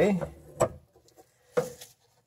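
Brief handling noise from moving a fuel hose aside by hand: a sharp click about half a second in and a second short knock just before the end, with quiet between.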